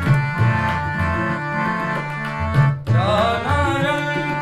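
Sikh kirtan accompaniment: a Yamuna harmonium holding chords while tabla play a steady rhythm with deep bass-drum strokes. Near three seconds the music breaks off for a moment, then a voice comes in singing.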